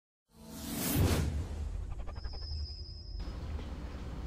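Intro sound effect: a whoosh that swells to a peak about a second in, followed by a thin high ringing tone over rapid faint ticks that cuts off suddenly a little past three seconds.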